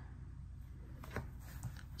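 Faint handling of hard plastic trading-card holders on a mat: a couple of soft clicks over a low steady hum.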